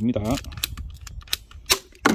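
A red ratcheting pipe cutter biting into the hard plastic housing of a water-filter cartridge: a few sharp clicks and snaps as the handle is squeezed and the blade cuts, the loudest near the end.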